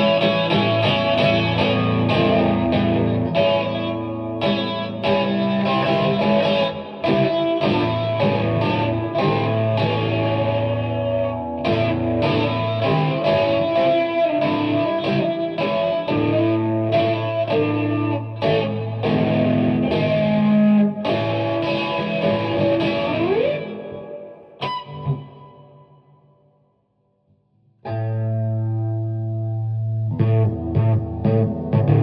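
Electric guitar played through an amplifier with effects and some distortion: a continuous run of picked notes over sustained low notes, with a short upward slide. About 24 seconds in the playing stops, rings out, and falls silent for about two seconds before it starts again.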